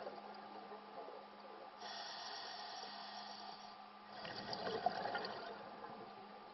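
Scuba diver breathing through a regulator underwater: a hissing inhale about two seconds in, then a bubbling exhale about four seconds in, over a steady low hum.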